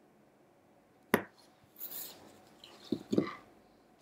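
Oracle cards being handled and laid on a wooden tabletop: a sharp tap about a second in, then the cards sliding across the wood, and two more light taps near the end.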